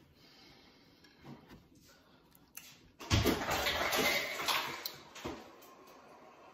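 Quiet room, then about halfway a rough scraping with a few knocks, lasting about two seconds: a tray of candy-coated fruit skewers being slid across the table.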